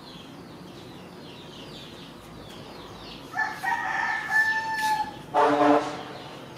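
A rooster crowing in the background: a long drawn-out call in the second half, then a short, louder call near the end. Faint small-bird chirping runs underneath.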